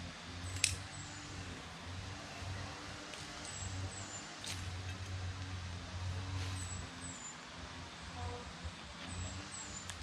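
Rooster's comb (celosia) plants being pruned by hand: leafy stems rustling and snapping, with three sharp snaps, the loudest about half a second in.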